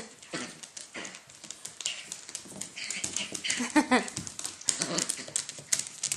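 Two small dogs wrestling on a hardwood floor: claws clicking and scrabbling on the wood throughout, with short dog vocal sounds. A woman laughs about four seconds in.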